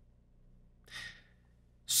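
A man's single short in-breath about a second in, between pauses of near silence; his speech starts again right at the end.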